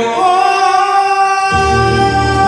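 A man singing a long, high held note in a gospel song, the pitch rising slightly as it opens and then held steady. The low keyboard accompaniment drops away under the note and comes back in about a second and a half in.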